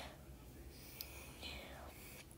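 Near silence: faint room noise from a home microphone, with a soft click about halfway through and a faint breathy hiss near the end.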